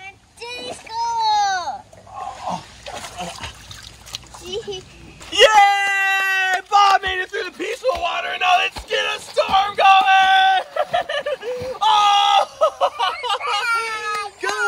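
Water splashing as a man wades through shallow lake water, with children's high-pitched wordless cries over it that grow loud and drawn-out from about five seconds in.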